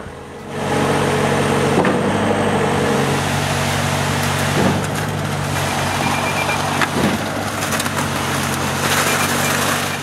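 Diesel engine of a concrete pump truck running steadily under load as concrete is pumped through the hose, with a few knocks along the way.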